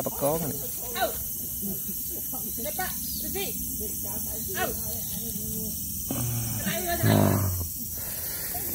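Soft voices talking over a steady high-pitched chorus of insects, with a louder low voice from about six to nearly eight seconds in.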